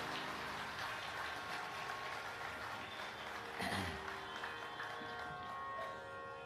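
Audience applauding, thinning out, over the faint steady drone of the tanpuras; a brief knock about three and a half seconds in.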